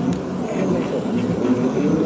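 Electric motor and gearbox of a 1/10-scale RC crawler pickup whining as it climbs, the pitch wavering up and down with the throttle.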